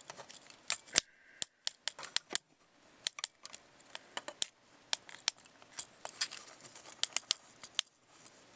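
Plastic parts and joints of a Transformers Generations Megatron action figure clicking and clacking as it is transformed by hand: many quick, irregular clicks.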